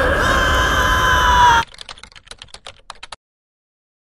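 Horror trailer sound design: a loud, dense noisy hit with a high held tone that sags slightly in pitch cuts off suddenly about a second and a half in. A quick run of quieter sharp clicks, about six a second, follows and stops about three seconds in.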